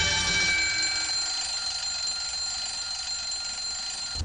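Alarm clock ringing with a steady high tone, as the music beneath it dies away in the first moment.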